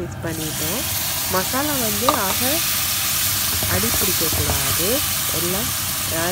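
Hot oil in a kadai sizzling as the lemon masala is poured over frying peanuts, chana dal and dried red chillies. The sizzle jumps up suddenly just after the pour and then holds steady.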